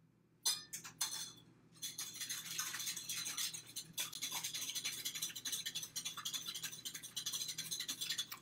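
A wire whisk beating buttermilk and vegetable oil in a glass bowl: a few clinks about half a second in, then fast, steady whisking with the wires ticking against the glass from about two seconds in.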